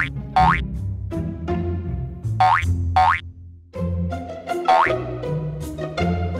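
Playful children's background music with a bouncing bass line, with five short rising boing sound effects laid over it.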